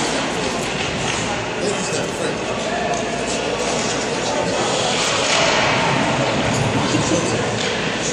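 Indistinct voices echoing in an indoor ice rink, mixed with the scrape of skates and the clack of hockey sticks on the ice.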